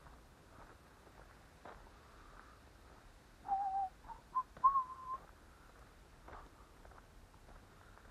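A person whistling a few notes, starting about three and a half seconds in: a lower wavering note, two short higher notes, then a longer higher held note, all within about two seconds.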